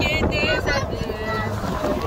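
Wind rushing over the microphone on a moving open golf cart: a steady low rumble, with high-pitched voices talking over it.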